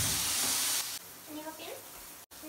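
Bath tap turned on: water rushes out with a loud hiss for under a second, then drops suddenly to a quieter steady running into the tub.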